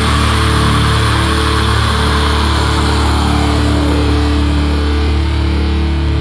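Post-hardcore/metal song with distorted electric guitars and bass holding a long, sustained chord at a steady loud level, without drum hits.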